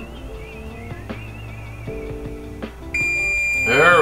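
Soft background music, then about three seconds in an electric oven's timer starts sounding a steady high-pitched tone: its countdown has reached zero and the bake time is up.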